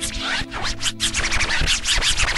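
Instrumental intro of a hip hop track: sustained synth chords under a fast run of clicking, scratch-like percussion.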